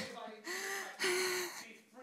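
A woman's short wordless vocal sounds into a handheld microphone: breath at first, then two brief held voiced sounds of about half a second each, fading away after.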